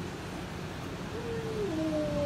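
Steady background hiss with a low hum. About a second in, a faint tone glides down in pitch, and near the end a second, higher tone starts and falls slowly.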